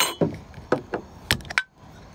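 A few sharp clicks and knocks from a glass jar of pickled quail eggs being handled and opened, the sharpest near the end.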